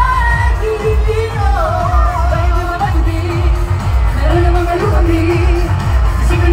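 Live pop music played loud through a concert sound system: a sung vocal melody over a heavy, steady bass beat, heard from within the audience.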